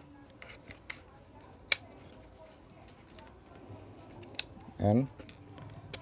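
A few small, sharp plastic clicks and light handling as a DR-E18 DC coupler dummy battery is seated in a Canon T6i's battery compartment and the compartment door is latched shut; the sharpest click comes a little under two seconds in.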